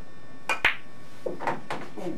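Pool shot: the cue tip strikes the cue ball, and a split second later the cue ball hits an object ball, giving two sharp clicks close together.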